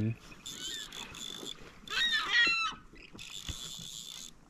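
Gulls calling overhead: a few short calls that rise and fall, about two seconds in. Before and after them comes a high, steady buzz lasting about a second each time.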